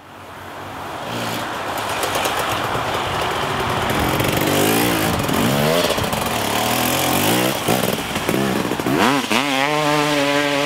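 Dirt bike engine revving up and down, fading in from silence at the start. Near the end the revs climb and then hold steady.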